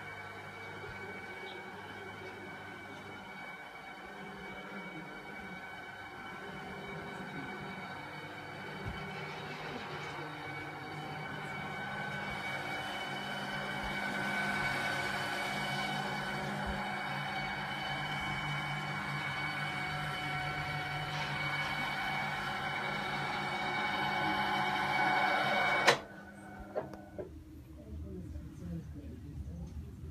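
An electric motor running steadily and slowly growing louder, then stopping abruptly with a click about two seconds before the end, followed by a few faint knocks.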